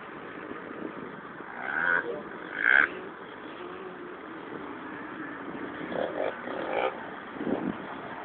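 Steady road and engine noise heard from inside a moving vehicle, with wavering voice-like sounds over it and two short loud sounds about two and three seconds in.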